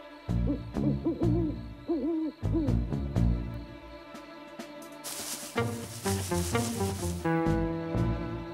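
Owl hooting several times over low, pulsing background music, as a night-time sound effect. About five seconds in there is a brief hissing swell, followed by sustained music chords.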